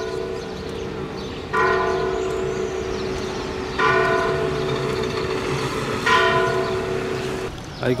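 Church tower bell striking the hour of eleven: slow single strokes about two and a quarter seconds apart, three of them here, each ringing on over a lingering hum.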